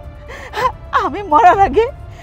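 A woman crying out in distress, her voice wavering up and down in two wordless cries with catching breaths, over soft background music.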